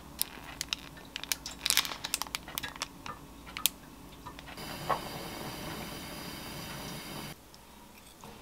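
Crisp little crackles and ticks as chopped green onion is sprinkled by hand onto a bowl of sliced salmon. About halfway a steady high hiss cuts in, with a single knock under it, and the hiss stops abruptly near the end.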